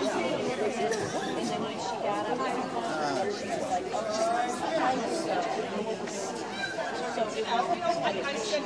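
Indistinct chatter of several people talking at once, with no single voice standing out, in a large hall.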